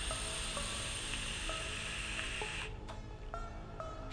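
Nudge rebuildable dripping atomizer being fired on a squonk mod during a drag: a steady hiss of the coils sizzling and air rushing through the airflow for about two and a half seconds, cutting off sharply. Soft background music with plucked notes plays underneath.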